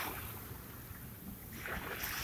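Small waves washing onto a sandy beach, a wash building near the end, over a steady low rumble.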